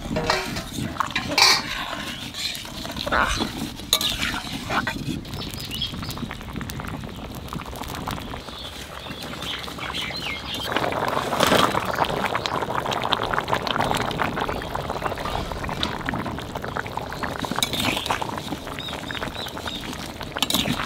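A metal spoon stirs boiling curry in an aluminium kadai, clinking sharply against the pan a few times in the first five seconds. From about halfway in there is a louder stretch of several seconds of stirring and sloshing in the liquid.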